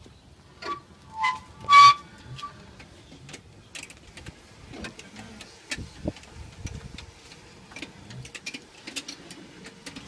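Homemade wooden Litz wire twisting machine running, its large drive pulley turning the spool carousel. There are a few short squeaks in the first two seconds, the loudest about two seconds in, then irregular clicking and ticking as the 16 wire spools twist their strands together.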